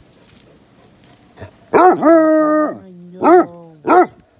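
Basset hound barking. The first bark, about a second and a half in, is drawn out into a short held bay, followed by two short barks close together near the end.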